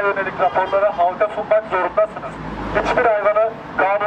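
A man's voice reading a statement aloud in Turkish through a megaphone, with a brief low rumble beneath it about two and a half seconds in.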